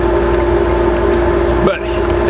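A steady machine hum holding one constant pitch over a low rumble, without let-up.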